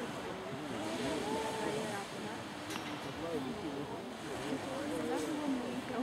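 Indistinct voices of people talking at a distance, over a steady hiss of wind and surf.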